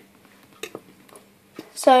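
A plastic squeezy bottle of salad cream being squeezed over a salad bowl: a few faint soft ticks and squelches, with a boy's voice starting near the end.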